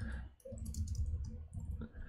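A few faint keystrokes on a computer keyboard, short scattered clicks while a line of code is typed.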